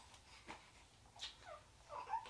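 Faint, brief squeaks from a two-week-old newborn baby, with a soft click about half a second in.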